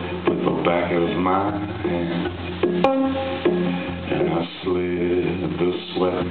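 Live acoustic guitar accompaniment to a folk song, with a man's voice carrying an indistinct sung line over it and one sharp plucked note about three seconds in.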